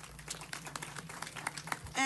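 Scattered applause from an audience, many quick claps over a faint steady hum.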